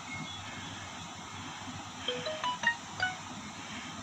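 Smartphone notification chime: a quick run of short electronic tones at different pitches about two seconds in, marking the Bluetooth internet-sharing connection being made between the two phones.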